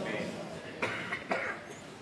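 Two short coughs about half a second apart, over a faint murmur of voices.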